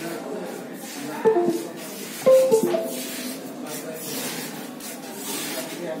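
Indistinct background voices mixed with music, with two short louder pitched sounds about one and two seconds in.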